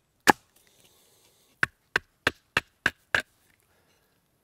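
Hatchet chopping into a wooden stick held upright on a chopping stump. There is one sharp strike just after the start, the loudest, then a run of six quick chops at about three a second near the end.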